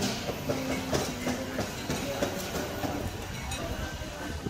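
Busy food-centre ambience: a steady rush of noise with indistinct background voices and scattered clinks and clatters of crockery and cooking.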